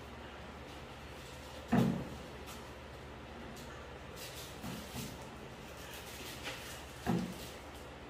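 Wooden spoon stirring cookie dough in a glass mixing bowl, with two dull knocks of the bowl and spoon, one about two seconds in and one near the end, and a couple of lighter ones in between.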